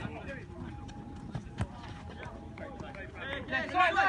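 Footballers' voices calling across the pitch during play, turning into louder shouting near the end, with a couple of sharp knocks about a second and a half in.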